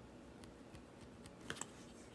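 A few light clicks and taps of a pen and clear plastic ruler being handled on a tabletop, with two sharper clicks close together about one and a half seconds in.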